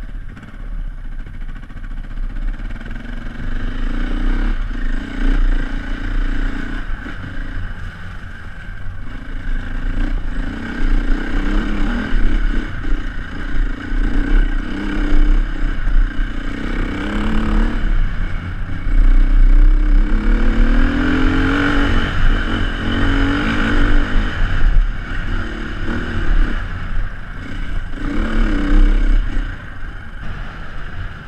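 2006 Beta RR450 four-stroke single-cylinder dirt bike engine heard on board, revving up and down again and again as the throttle is opened and closed on the trail, over a heavy low rumble.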